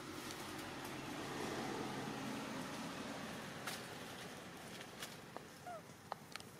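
A rush of outdoor noise that swells and then fades, followed by a few sharp clicks and one short squeaky call near the end.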